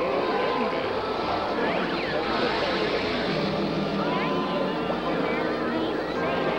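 A steady, dense jumble of many cartoon soundtracks playing at once. Overlapping voices mix with sounds gliding up and down in pitch, and no single sound stands out.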